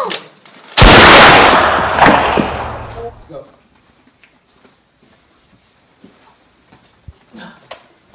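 Loud gunshot sound effect: a sudden blast about a second in that fades away over roughly two and a half seconds, with a couple of fainter hits in the tail.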